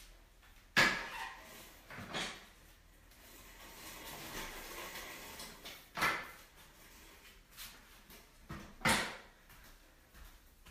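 Home-gym equipment being moved out of the way, an adjustable weight bench among it: four sharp knocks about one, two, six and nine seconds in, the first the loudest, with quieter handling noise between them.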